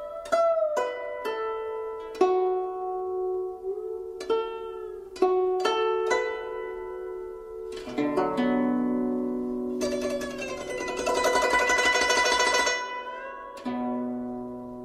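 Instrumental music on a plucked string instrument: single notes struck and left to ring, then from about eight seconds a fuller passage of fast repeated notes that thins out near the end.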